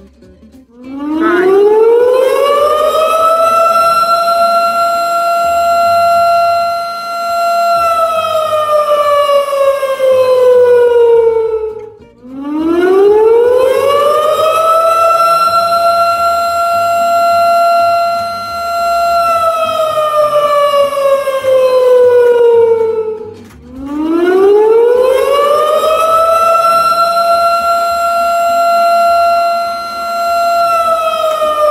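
A loud wailing siren, civil-defense style, winding up in pitch, holding a steady wail and then winding slowly down. It does this twice, then winds up a third time and is still holding near the end.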